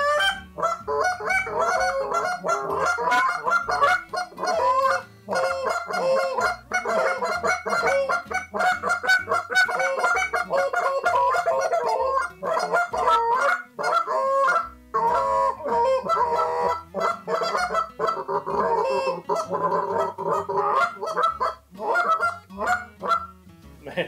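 Two flute-style goose calls blown together, a dense, rapid run of short goose clucks and notes, with brief pauses a few seconds in and again midway.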